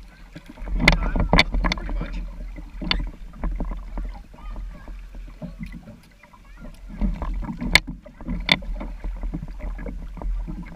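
Kayak paddling heard from a camera on the bow of a plastic kayak: paddle strokes dipping and splashing in the water, with scattered sharp taps and drips, the loudest about a second in and again near the end.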